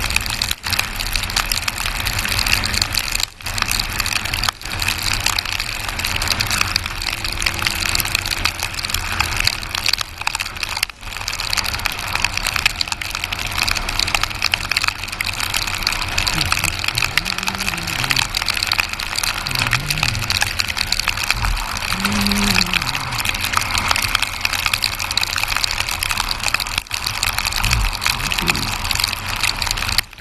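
Steady rush of wind and road noise on a motorcycle travelling along a wet road, with the engine's low rumble underneath.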